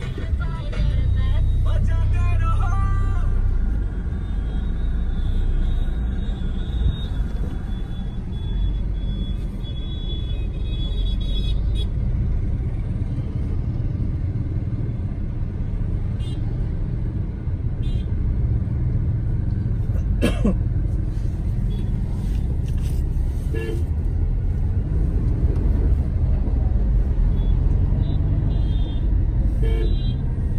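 Steady rumble of a car driving, heard from inside the cabin, with car horns honking now and then in the street traffic around it.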